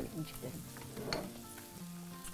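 Faint sizzling of orzo and chopped vegetables toasting in butter and olive oil in a pan, with a few light utensil ticks from stirring.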